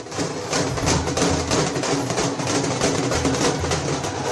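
Rhythmic music driven by drums and percussion, with a steady beat.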